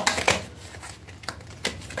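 A deck of reading cards being shuffled in the hands: a quick run of light card clicks that thins out after about half a second.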